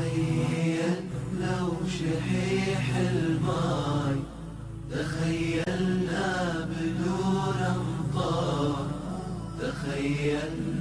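Nasheed music: a chanted, melodic vocal line without clear words over a steady low drone, with a brief lull about four seconds in.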